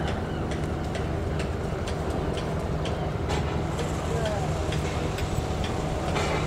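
Diesel engine of a lorry-mounted crane running steadily, a low even drone.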